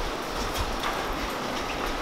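Footsteps on a polished concrete floor, a few soft steps about half a second apart, over the rustle of a handheld camera being carried.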